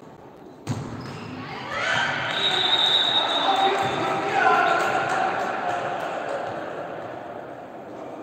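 A single sharp smack of the volleyball about a second in, then players and spectators cheering and shouting together after the point. The cheering swells over a couple of seconds and slowly dies away.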